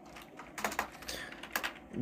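Computer keyboard being typed on: a handful of separate clicking keystrokes.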